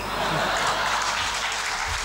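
Audience applauding and laughing in a hall, breaking out right at the start and going on steadily.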